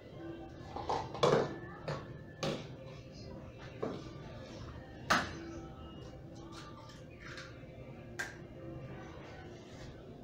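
A few sharp knocks and clatters of kitchenware set down and handled on a stainless steel work table, the loudest a little over a second in and about five seconds in, over quiet background music.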